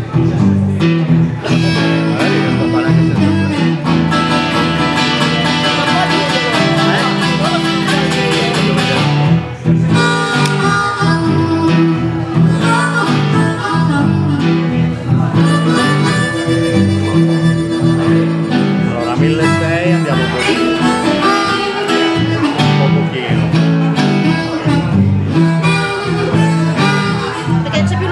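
Live acoustic blues: a metal-bodied resonator guitar played with the fingers, with a blues harmonica joining partway through.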